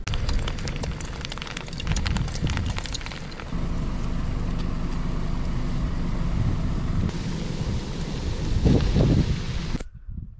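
Steady rushing of a camp stove burner under a pot of boiling water, with wind rumbling on the microphone. During the first few seconds, a plastic packet crinkles and clicks as fish balls are tipped into the pot. The sound stops abruptly just before the end.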